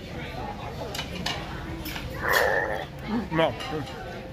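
Restaurant dining-room background with low voices and a few faint clinks of dishes, broken about halfway through by one short, harsh sound, the loudest thing heard.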